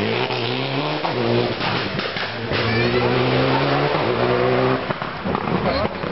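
Citroën DS3 R3T rally car's turbocharged 1.6-litre four-cylinder engine accelerating hard, its pitch climbing and breaking several times as it changes up through the gears.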